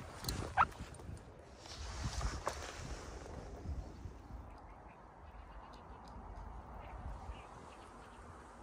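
A brief animal call, rising in pitch, about half a second in, over a low steady rumble.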